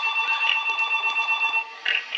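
Referee's pea whistle blown in one long trilling blast of about a second and a half, then a short second toot near the end.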